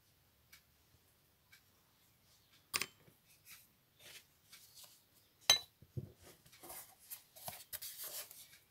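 Small hand tools and a picture board being handled on a craft table: a sharp click about three seconds in, a louder click about five and a half seconds in, then a run of light knocks and rubbing.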